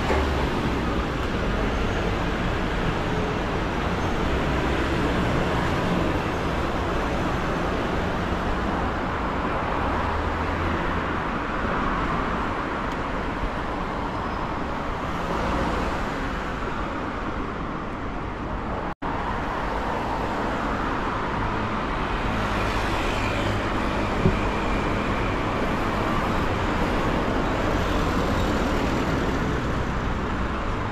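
Steady city street traffic: a continuous rush of cars passing on the road beside the walkway, broken by a split-second dropout about two-thirds of the way through.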